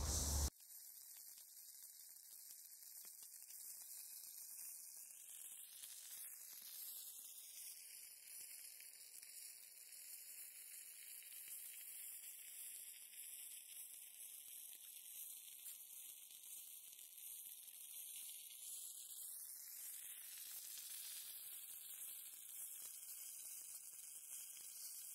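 Faint, steady high-pitched hiss with a slowly shifting tone colour and no distinct events.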